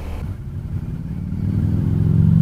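Motorcycle engine running under way, a low steady drone that grows steadily louder.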